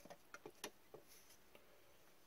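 Faint clicks of trading cards being flipped and tucked into a stack by gloved hands: a handful of soft ticks in the first second, then just room tone.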